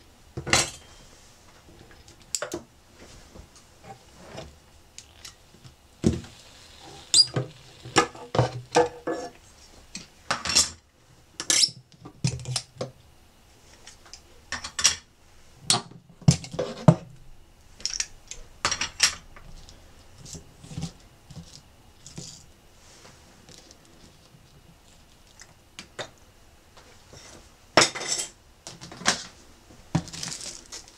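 Scattered clinks, knocks and crinkles from hands working a wooden bridge-removal jig and aluminium bubble-foil insulation on an acoustic guitar top, with a burst of crinkling near the end.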